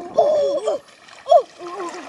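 Boys' voices crying out in short, high-pitched shouts, the loudest a long cry near the start and a sharp one just past the middle, over water splashing as they wade and swim.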